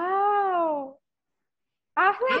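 A young girl's voice: one long drawn-out cry of about a second, rising and then falling in pitch, playful rather than speech.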